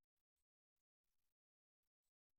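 Near silence: a dead gap in the audio.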